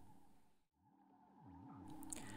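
Near silence at a cut, with faint sweeping electronic tones fading in over the second half, gliding down and up in pitch several times.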